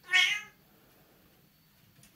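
A Bengal cat gives one short meow, about half a second long, at the start.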